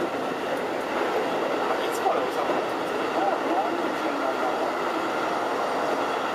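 Keikyu 2100-series train running at speed, heard from inside the front car: a steady rumble of wheels on rail, with one sharp click about two seconds in.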